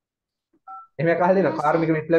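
A single short two-tone electronic beep, like a telephone keypad (DTMF) tone, followed about a quarter second later by a man speaking.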